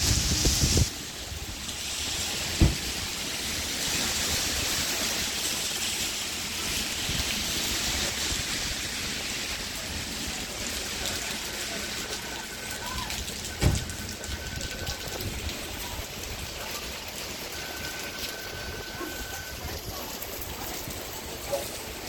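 Steady rain falling on a wet city street, with two sharp knocks, one about three seconds in and one just past the middle, and a faint thin tone heard twice in the second half.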